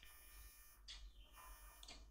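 Near silence: faint room tone, with two faint brief sounds, one about a second in and one near the end.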